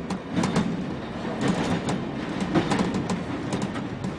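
London Underground train running, with a steady low rumble and irregular sharp clicks and clatter from the wheels on the track.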